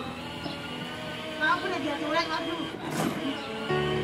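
Young children's high-pitched voices over steady music, with a sharp knock about three seconds in and a low steady hum starting near the end.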